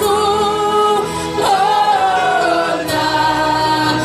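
Gospel choir singing in long held notes over a steady low instrumental accompaniment.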